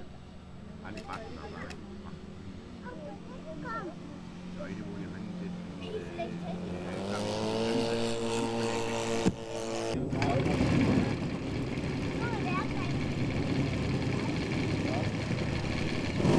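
Engine of a large scale model aircraft running with its propeller: a steady note that rises in pitch about seven seconds in and then holds. From about ten seconds in it runs louder and rougher as the engine is run up.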